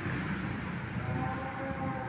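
Steady outdoor background noise, with a faint, steady pitched tone coming in about a second in and holding to the end, like a distant horn.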